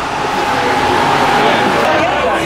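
Crowd hubbub in a busy bar: many voices blending into a loud, steady wash of chatter.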